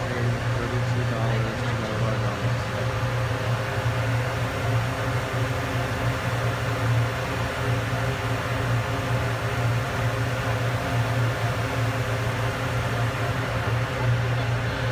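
Steady low mechanical hum of running machinery, constant in level and pitch throughout.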